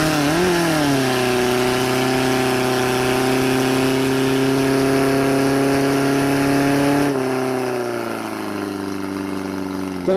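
Portable fire pump's engine running hard at high revs while pumping water through the attack hoses, its pitch wavering briefly at first and then holding steady. About seven seconds in the revs drop and it settles at a lower, steady speed.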